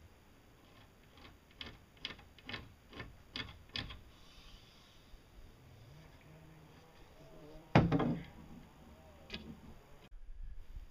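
A long wooden pole knocking inside a homemade boat hull: a run of about seven light knocks over two or three seconds, then one loud thump near the end.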